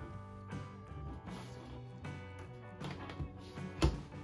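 Soft background music, with one sharp click near the end as the USB-C power plug is pushed into the back of the Raspberry Pi 400.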